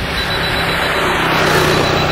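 Wind buffeting the microphone: a loud, steady rushing noise with a heavy low rumble, swelling slightly toward the end.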